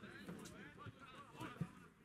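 Faint, indistinct voices of football players and spectators calling out across the pitch, with a short sharp knock about one and a half seconds in.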